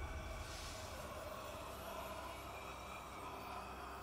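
Quiet sustained background score, a soft held drone of steady tones that fades slowly.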